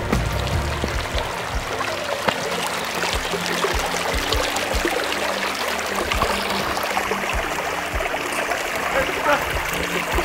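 Shallow mountain stream running over stones, a steady rush of water, with background music underneath.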